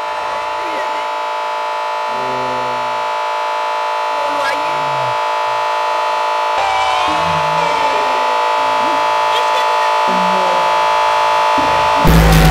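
Industrial power-noise intro: a steady electronic drone of many stacked tones that grows gradually louder. Broken, heavily processed voice-like fragments stutter and bend underneath it.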